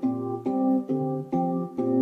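Electronic keyboard playing one key over and over through an Arduino-based MIDI rotator, so each press sounds a chord, about two a second. The root C and a fifth above it stay fixed while the third note changes on each press, rotating among four pitches.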